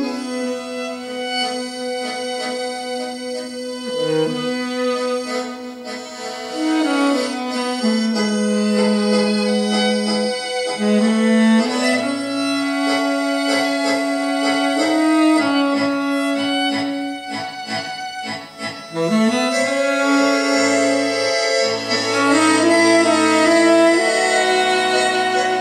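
Accordion playing a melody of long held notes, with low bass notes coming in about halfway and again near the end, and a passage of quick, short repeated chords a little past the middle.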